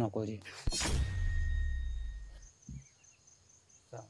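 Dramatic boom sound-effect hit: a sharp thud about half a second in, then a deep rumble that dies away over about two seconds.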